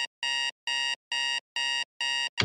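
Digital alarm clock going off: a rapid train of identical electronic beeps, about two a second.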